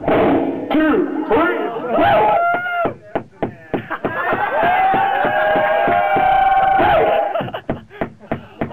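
Turntable scratching: a vocal sample on vinyl dragged back and forth and chopped into rapid short cuts, its pitch sweeping up and down. In the second half a held, wavering note is worked with fast stuttering cuts.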